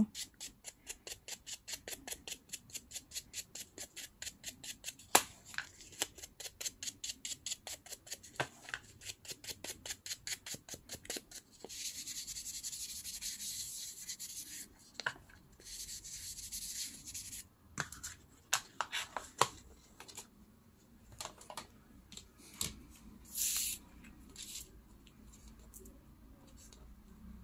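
Ink applicator dabbed quickly on an ink pad and the edges of a paper label to distress them, about four light taps a second. It is then rubbed along the label in two longer spells of scratchy rubbing, with a few scattered taps and a short rub near the end.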